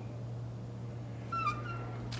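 A door squeaking briefly as it is pushed open: one short, high squeak about one and a half seconds in, over a steady low hum.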